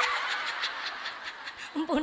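An audience of women laughing together, the laughter fading away over a second or two, with a woman's voice coming back in near the end.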